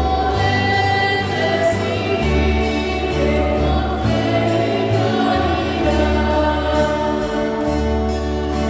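A choir singing a slow hymn with instrumental accompaniment: long held notes over a bass line that changes about every two seconds.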